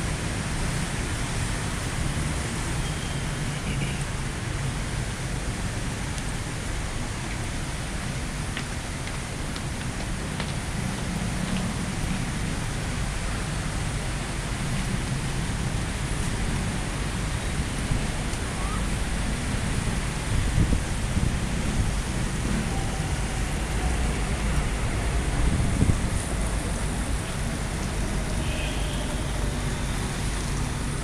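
Steady traffic noise from a busy multi-lane city road: a constant hiss over a low rumble, with a few louder low bumps in the second half.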